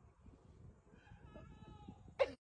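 Near silence on the stopped chairlift, with a faint, distant pitched call in the second half.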